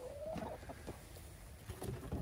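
Domestic hens clucking faintly, with one soft drawn-out call at the start.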